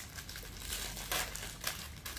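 Thin plastic wrapper of a packaged bread roll crinkling in irregular bursts as it is handled and pulled open by hand.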